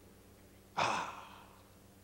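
A man's single breathy sigh into a handheld microphone, starting suddenly about three quarters of a second in and fading over about half a second.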